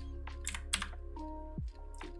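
Several irregular computer keyboard keystrokes, over quiet background music with held notes.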